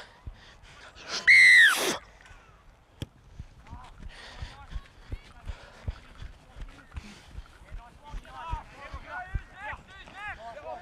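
One loud, shrill whistle blast lasting under a second, its pitch dipping as it ends, followed by faint distant shouting from players on the field.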